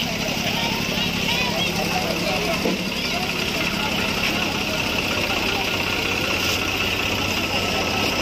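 Swaraj 735 FE tractor's diesel engine idling steadily, under the chatter of a crowd of voices.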